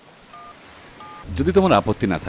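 Two short keypad tones from a mobile phone as numbers are dialled, each a pair of steady pitches, about half a second apart. Near the end a voice comes in, the loudest sound, over a low hum.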